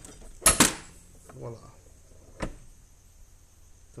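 Hand-lever arbor press with a trunnion removal tool pushing the stock trunnion out of an LS rocker arm: two sharp metallic cracks in quick succession about half a second in as the trunnion breaks free. A lighter click follows about two and a half seconds in.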